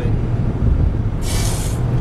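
Steady low road and engine rumble heard inside a moving car, with a short burst of hiss a little past halfway through.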